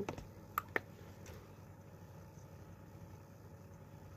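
Three small clicks within the first second and a half, over a quiet, steady low background hum.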